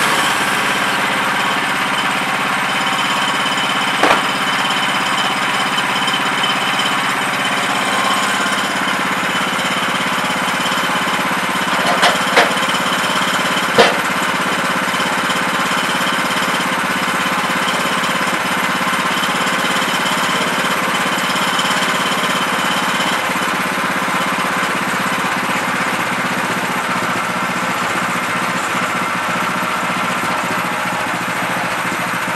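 The gas engine of a Woodland Mills portable bandsaw mill runs steadily. A few sharp knocks come about four seconds in and twice around twelve to fourteen seconds.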